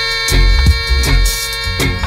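Roots reggae from a 1975 Jamaican 7-inch single, instrumental with no singing: a long held chord over a deep bass line and drums.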